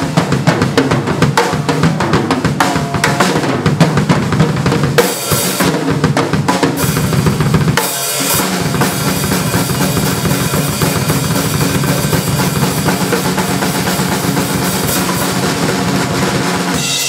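Solo on a Tama acoustic drum kit: rapid strokes on snare, toms and bass drum mixed with cymbal crashes. The playing breaks off briefly about five and eight seconds in, then runs on as a dense, unbroken pattern.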